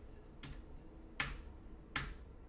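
Short, sharp clicks at a steady, even pace, about one every three quarters of a second, three of them.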